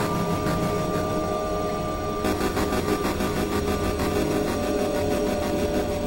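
Experimental synthesizer drone music: a dense, noisy low layer under a few held steady tones. The texture shifts about two seconds in, when the upper range fills in.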